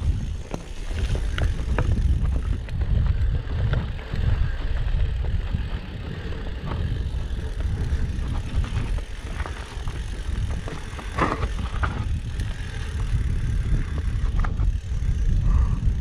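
Mountain bike descending a rocky trail: the tyres run over loose stones, with scattered clicks and rattles from the bike and a steady rumble of wind on the microphone.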